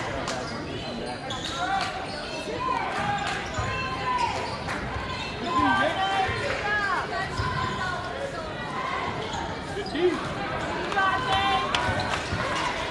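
A basketball being dribbled on a hardwood gym floor, with sneakers squeaking in short chirps as players cut and stop, over a murmur of voices from the crowd.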